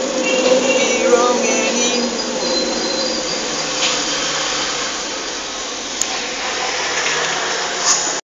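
Steady noisy background hum, with brief pitched tones in the first two seconds. Sharp clicks about six seconds in and again just before the end, as the phone is handled to stop recording.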